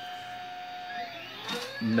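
Stepper motors of a homemade RepRap gantry 3D printer whining as the print head moves. A steady tone slides down in pitch about a second in while a fainter whine rises, as the moves change speed.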